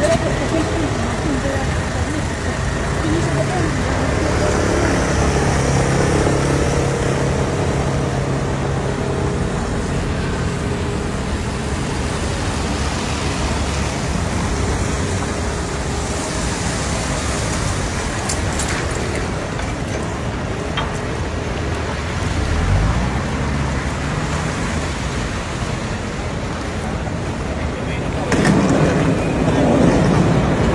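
Traffic passing on wet city streets, a steady hiss of tyres with engine hum, and indistinct voices of people nearby. A low engine note rises about three-quarters of the way through, and the traffic gets louder near the end.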